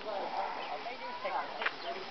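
Indistinct voices of people talking on the street, with one brief sharp click about one and a half seconds in.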